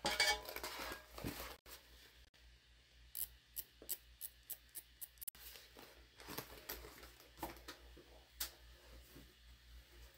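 Faint rustling as a cork tote is handled, then a run of light, quick ticks and scratches, about four a second, from a chalk marker marking the bag's top edge.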